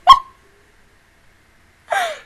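A woman's stifled, excited vocal outbursts, muffled behind her hand: a short, sharp squeak right at the start, and near the end a brief squeal that falls in pitch.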